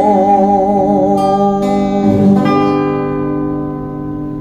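A man holds a last sung note with vibrato over an acoustic guitar. The voice stops about two and a half seconds in, after a few final plucked chords, and the guitar rings out and fades, ending the song.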